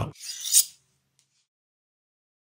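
A short rasping rub, about half a second long, within the first second.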